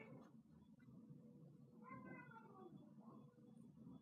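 Near silence: room tone, with one faint, short pitched sound about two seconds in.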